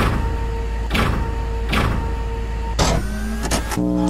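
Electronic soundtrack for an animated intro: a steady deep bass drone with a rhythmic whoosh about once a second, changing near the end to layered held electronic tones.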